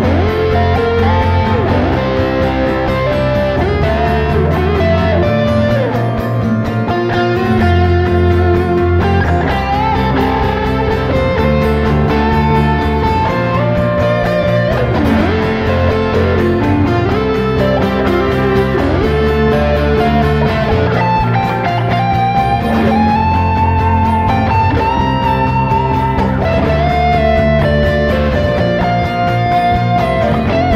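A live rock band playing: a strummed acoustic guitar, electric guitars and a bass guitar, steady and continuous.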